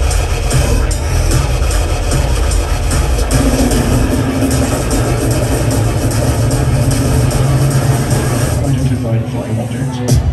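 Loud electronic bass music, in the dubstep style, played by DJs through a club sound system and recorded on a phone, with heavy sub-bass throughout. Near the end the deepest bass briefly drops away.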